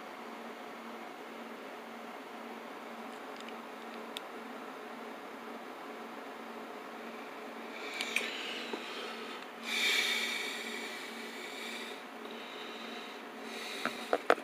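Steady room hum with a faint low tone. About eight seconds in, a few light clicks and rustles of the sunglasses kit being handled, then a louder rustle lasting a second or two around ten seconds in.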